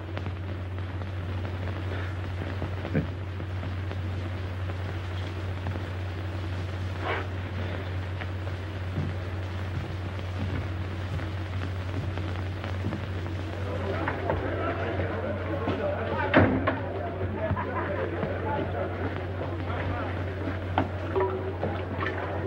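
Steady low hum and hiss of an old optical film soundtrack, broken by scattered pops and crackles, one louder pop about two-thirds of the way in. From a little past the middle, faint indistinct background voices rise under the hum.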